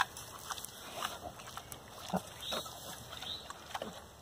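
Pigs nosing in the dirt and mud: a few short, soft snuffles and grunts scattered through the few seconds.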